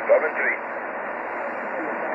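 Steady hiss and static from a shortwave amateur transceiver's receiver, tuned to 21.29 MHz upper sideband between transmissions, heard through the narrow band of a single-sideband filter; a single spoken word comes right at the start.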